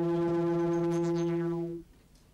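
A steady, low, buzzy synthesized tone with many overtones, a science-fiction sound effect that cuts off suddenly shortly before the end.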